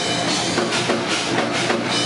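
Live djent metal band playing loud: distorted electric guitars, bass guitar and a drum kit.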